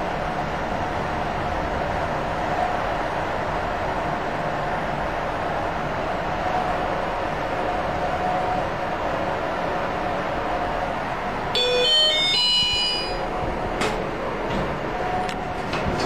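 Steady background hum, then about eleven and a half seconds in a Hyundai elevator's electronic arrival chime sounds, a short run of bright tones, as the car reaches the landing. A couple of faint clicks follow.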